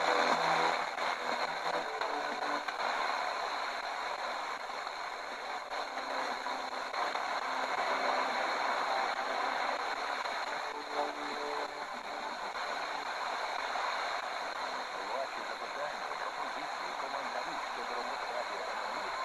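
Static hiss from an FM portable radio's speaker, tuned to a weak, fading Sporadic-E signal in the OIRT band. Faint snatches of a station's voice break through the noise now and then.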